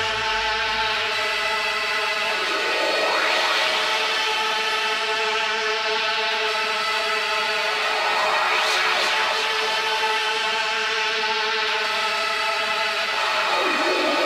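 Electronic drum'n'bass music in a drumless passage: a held synth pad chord with a sweep that rises and falls three times, about every five seconds. The low bass drops out about a second in.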